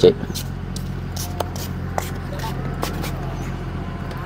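A steady low mechanical hum with a few light clicks and taps scattered through it.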